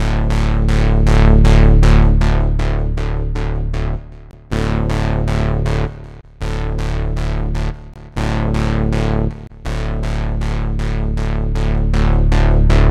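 Synthesizer playing a fast repeated-note pattern, about four notes a second, over sustained bass notes, with the chord changing about every two seconds. It is running through a Neve 1081-style preamp plugin whose input gain is being turned up, driving the modeled input transformer.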